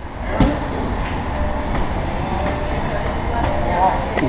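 One sharp strike landing on a Muay Thai pad about half a second in, over a steady low rumble of traffic on the overhead road.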